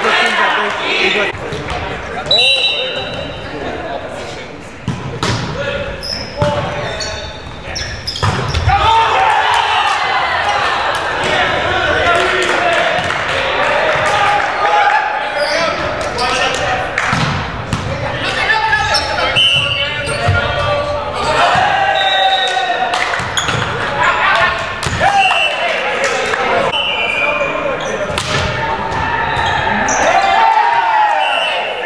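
Indoor volleyball play echoing in a large gym: players' voices and calls, repeated sharp hits of the ball, and short high squeaks of sneakers on the hardwood floor.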